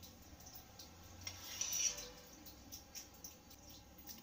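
Quiet kitchen-knife sounds as peeled hard-boiled eggs are sliced in half on a steel plate. There are a few faint clicks, and a brief, brighter scrape of the knife against the plate about a second and a half in.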